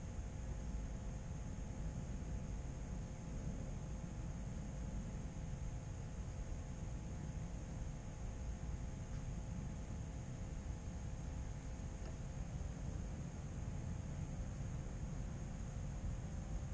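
Steady low rumble and hiss of background noise on a stationary onboard camera's microphone, with faint steady hums and no distinct event.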